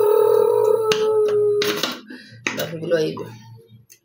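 A clear plastic food-chopper bowl clicks sharply about a second in as it is pried open, over a long drawn-out voiced 'ooh' held on one pitch for about two seconds, followed by low murmuring.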